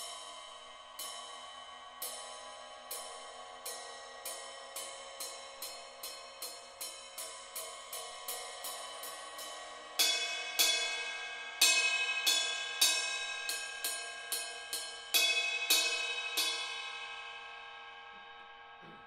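Ride cymbal struck repeatedly with a drumstick, its ringing building into a wash. Soft strokes speed up from about one a second to about three a second, then much louder strokes start about ten seconds in and stop about sixteen seconds in, the ringing fading after them.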